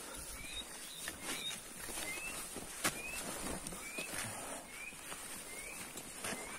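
A bird repeating a short rising chirp about once a second over a steady high insect buzz, with scattered clicks and footfalls from hikers and their trekking poles on a dirt trail; the sharpest click comes about three seconds in.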